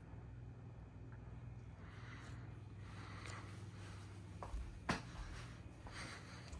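Quiet room tone with a faint steady low hum and two short light clicks near the end, the second louder.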